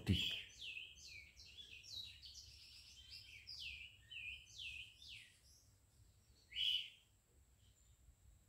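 A small bird singing faintly: a run of short, quick, falling chirps, then one louder chirp near the end.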